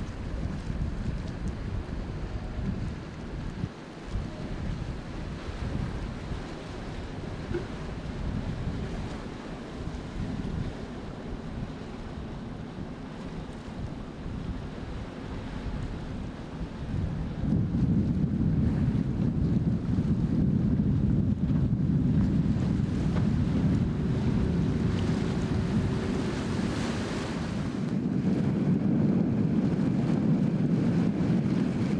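Wind rumbling on the microphone over waves at an inlet, with a boat's engine in the mix; the low rumble grows clearly louder a little past halfway.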